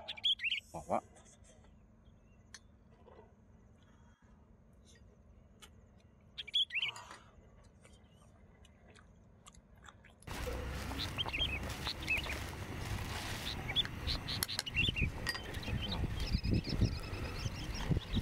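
Birds chirping with short, quick calls, sparse at first, then many in quick succession over a louder steady outdoor background from about ten seconds in.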